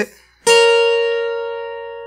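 Twelve-string acoustic guitar: a two-note double stop on the first and second strings, at the 9th and 11th frets, plucked once about half a second in and left to ring, slowly fading.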